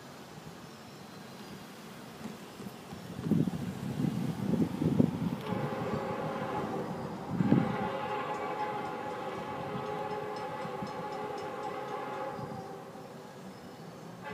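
Diesel locomotive's multi-chime air horn sounding one long, steady chord for about seven seconds from the approaching train, starting about five seconds in. Before and during the first part of the horn, low buffeting noise on the microphone peaks loudest around five seconds and again briefly near the middle.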